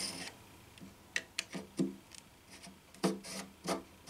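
Thin drill bit in a small hand drill twisted by hand into a guitar fretboard, scraping against the wood in a few short strokes, in two groups about a second apart.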